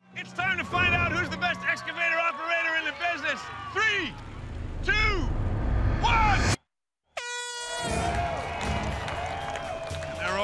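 Several people shouting and whooping, then, after a brief gap, a short air horn blast about seven seconds in that signals the start of the race.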